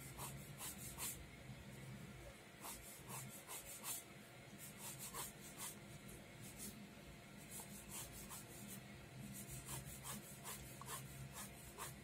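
Pen drawing on paper: short scratching strokes in quick clusters as lines are sketched, with light ticks of the tip between them.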